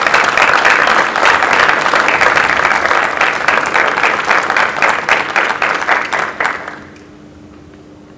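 Audience applauding, a dense patter of many hands clapping that dies away about seven seconds in, leaving a faint steady hum.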